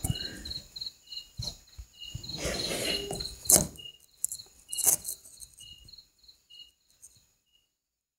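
Insects chirping, probably crickets: a steady run of short high chirps, about three a second, with a slower, lower chirp between them. A few sharp knocks and a brief rustle sound over it, the loudest knock about halfway through. All sound stops about half a second before the end.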